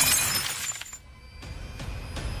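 Small glass perfume bottle shattering on the floor, its pieces tinkling and fading over the first second after the crash. Soft music comes in about halfway through.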